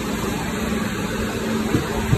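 Steady indoor store background noise: a low, even hum under a continuous hiss.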